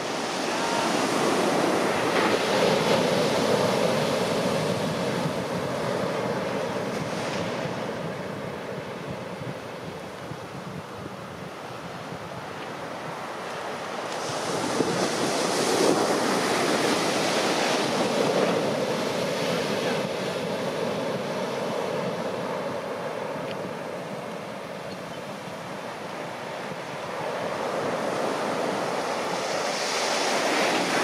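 Ocean surf: waves breaking heavily in the shorebreak and washing up the beach as a continuous rushing noise. It swells three times as waves crash: about a second in, around the middle, and near the end.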